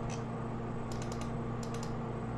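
A few light, quick clicks from a computer's controls, most of them in a short burst about a second in, over a steady low electrical hum.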